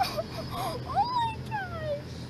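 Kitten meowing: a few short calls, then two longer meows from about a second in, each falling in pitch.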